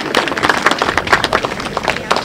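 Audience applauding: many quick, overlapping hand claps.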